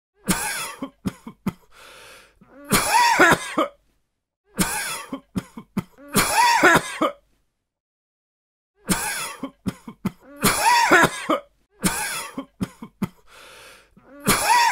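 A man coughing in repeated fits: each fit is a sharp cough, a few quick short coughs and then a longer, louder cough, with a drawn breath between some of them. There is a pause of almost two seconds about halfway through.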